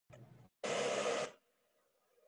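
A short burst of hiss-like noise, about two-thirds of a second long, loud and even from low to very high pitch, preceded by a fainter, shorter burst; it cuts off into near silence.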